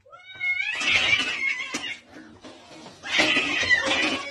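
A cat yowling angrily in two loud outbursts, the first starting with a rising cry about half a second in and the second about three seconds in, as it squares up to its own reflection in a mirror.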